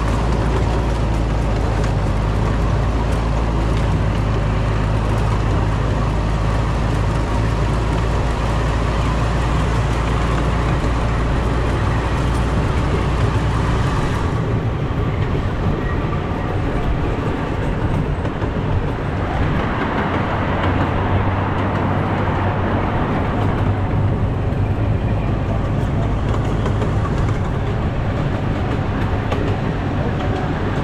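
Miniature park train running along its track, heard from aboard a riding car: a steady low drone with wheel and rail noise. About halfway through, the higher hiss drops away and the sound turns duller.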